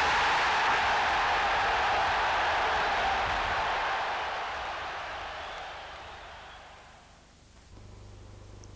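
Football crowd cheering, fading out gradually over about seven seconds, followed near the end by a low steady hum.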